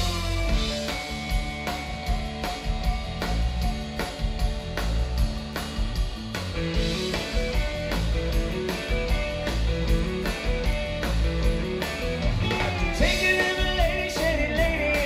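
Live rock band playing with electric guitars, bass guitar and drum kit, guitar notes held over a steady beat. Near the end a gliding, sliding melodic line comes in on top.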